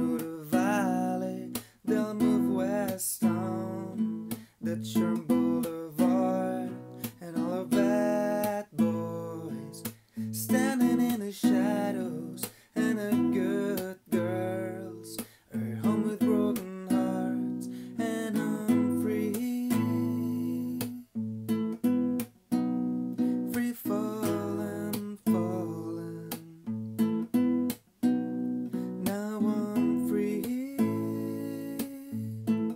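Ibanez nylon-string classical guitar, capoed, played with picked and strummed chords in a steady rhythm.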